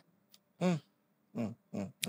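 A man's voice making three short closed-mouth 'mm' grunts at a close microphone, with dead silence between them.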